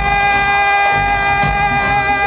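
Live reggae band playing, with a singer holding one long, steady note over the bass and drums.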